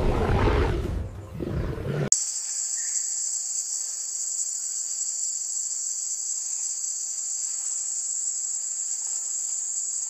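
Music for about two seconds, then a sudden cut to a steady, high-pitched insect chorus that drones on evenly without a break.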